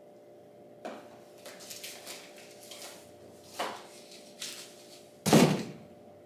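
A handful of scattered knocks and clatters from objects being handled, with one much louder thump near the end.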